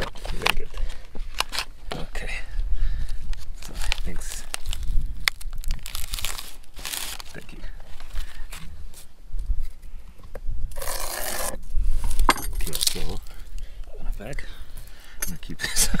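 Dry nori sheet crinkling and tearing as it is split in half by hand, among small handling clicks, with wind buffeting the microphone throughout.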